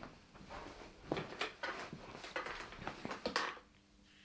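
A person walking up to a wooden chair and sitting down: an irregular run of soft knocks, scuffs and creaks of the chair and clothing, loudest in the second half and ending shortly before the end.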